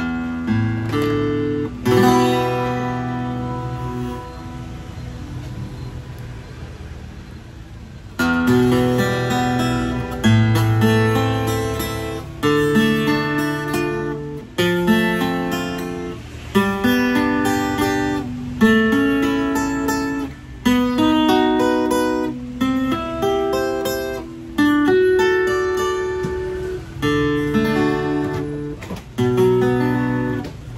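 Vintage Japanese Morris W-50 steel-string acoustic guitar played fingerstyle, with picked melody notes over bass notes. About two seconds in, a chord is left ringing and slowly dies away for several seconds before the picking resumes.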